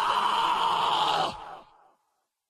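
Isolated male rock lead vocal holding a long sung note, the end of the word 'fall'. It stops about a second and a quarter in and leaves a short fading tail.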